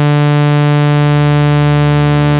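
u-he Diva software synthesizer holding one steady sawtooth bass note, loud and rich in overtones, while its second oscillator, tuned an octave lower, is brought up from zero volume.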